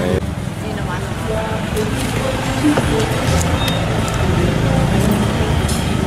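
Busy outdoor market ambience: indistinct background voices over a steady low rumble of vehicle engines and traffic, with a few small clicks and knocks.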